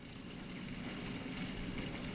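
Steady, faint rushing noise of a running reef aquarium: water circulating and equipment humming.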